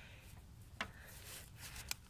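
Faint handling of a socket extension at the transfer case drain plug: two light clicks about a second apart with a little rubbing between them.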